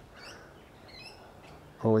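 Faint bird chirps, a few short high notes about a second apart, over quiet outdoor background noise.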